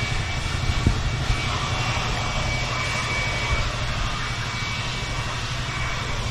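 A machine running steadily: a constant low hum with a faint high whine above it.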